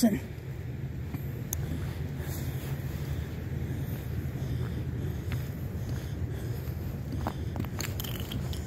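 A steady low outdoor rumble, with a brief scuff of a shoe skidding on ice near the end.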